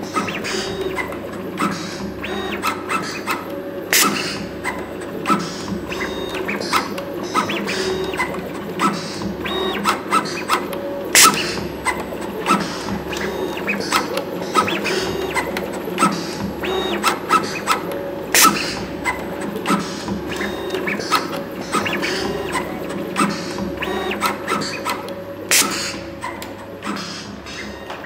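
Computerized wire stripping machine running its automatic cycle. Its stepper-motor-driven belt feed hums steadily, and the blade holder clicks repeatedly as it cuts and strips sheathed wire. A louder snap comes about every seven seconds, four times.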